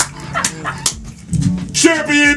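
Several men laughing and whooping in excitement, with a few sharp slaps or claps and a rising, yelping cry near the end.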